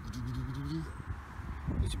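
A man's voice holding a low, drawn-out hesitation sound for nearly a second, followed by low wind rumble and handling noise on the microphone with a few short clicks near the end.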